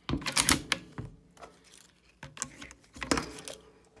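Sharp clicks and knocks from a Beretta 1301 shotgun's action being handled by hand. A cluster of clicks comes in the first second, then more clicks a couple of seconds in, with the loudest knock about three seconds in.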